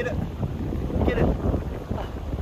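Wind buffeting the microphone, a rumbling, fluctuating roar.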